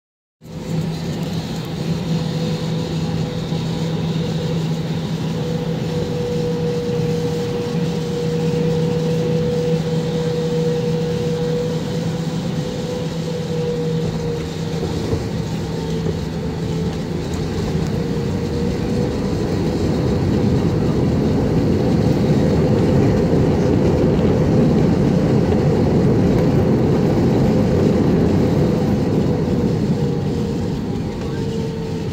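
Cabin noise of an Airbus A320-family jet landing: a steady engine drone with a low hum and a higher whine. About two-thirds through it swells into a louder, rushing roar as the plane slows down on the runway.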